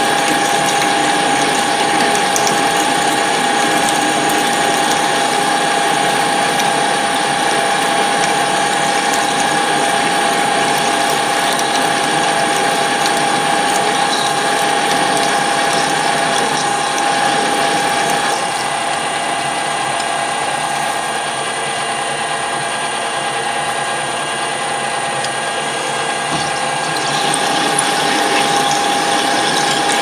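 Colchester Bantam metal lathe running with a steady gear whine, a twist drill in the tailstock boring into the end of the spinning workpiece. The sound drops a little in level for a stretch past the middle, then comes back up.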